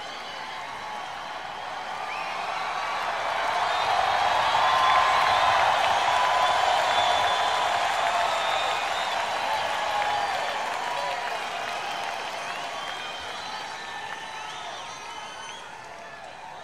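Large arena crowd cheering and applauding, with scattered whoops; the noise swells over the first few seconds, peaks about five seconds in, then slowly dies down.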